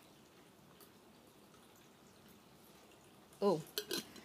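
Faint steady hiss of a small handheld mist sprayer misting into a glass jar.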